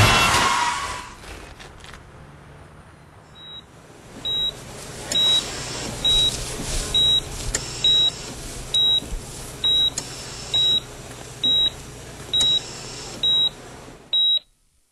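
A car goes by loudly in the first second and fades out. Then a hospital patient monitor beeps steadily at one high pitch, a little faster than once a second, over a low hum.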